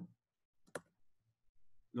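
A single sharp computer keyboard key click about a third of the way in, with a couple of fainter ticks after it in an otherwise quiet room: a keystroke relaunching a program.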